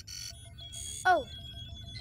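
Electronic sound effects of a cartoon spaceship cockpit's control panel: a quick cluster of bleeps, then a steady high tone over a fast, regular soft pulsing and a low hum.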